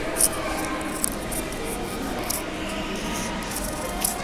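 Scratchy rubbing and rustling of a wired earphone cable being handled and an earbud pushed into the ear, with two short scratches near the start and about a second in. Behind it, a steady murmur of background voices and faint music.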